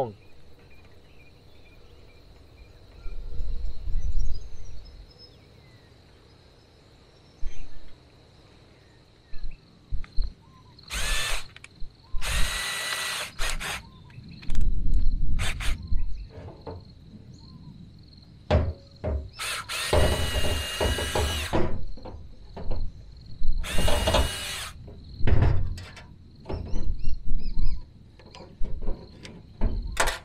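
Cordless drill boring holes through black inch poly pipe, running in four short bursts of whine, the longest about a second and a half, with knocks and handling clicks between them.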